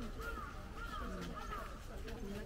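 A bird calling: a run of short rising-and-falling notes, about one every half second.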